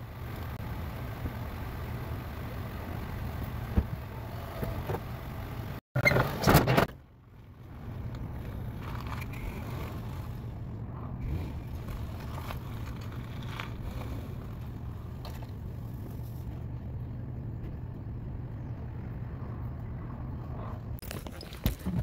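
Dodge Magnum's engine running with a steady low hum as the car comes off a tow dolly. A short loud burst of noise comes about six seconds in.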